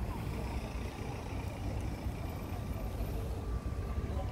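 Road traffic: a motor vehicle going by on the street, over a steady low rumble.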